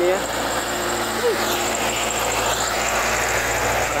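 A loaded medium diesel truck drives past close by, its engine running steadily under load with tyre noise on the asphalt.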